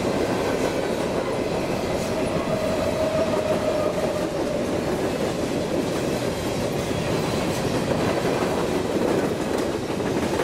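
Covered hopper cars of a freight train rolling past at trackside: a steady rumble and clatter of steel wheels on the rails. A faint whine rides over it for a couple of seconds about three seconds in.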